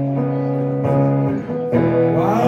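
Hollow-body archtop guitar playing strummed chords that are held and left ringing, with a new chord struck near the end.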